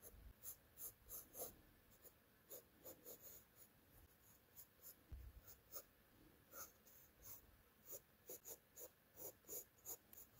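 Graphite pencil sketching on sketchbook paper: faint, short scratching strokes, about two or three a second, in an irregular rhythm.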